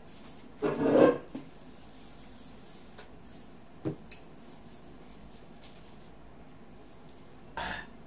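A man coughs once, loudly, about a second in, then gives a shorter cough or sharp breath near the end, with a faint tap in between. The chili heat of very spicy fire noodles is catching his throat.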